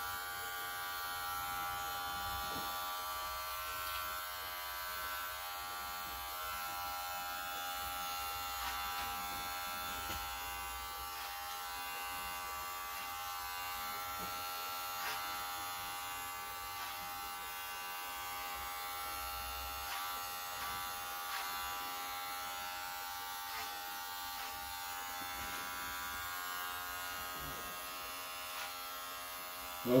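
Wahl electric hair clippers running steadily while trimming hair at the neck and sideburn.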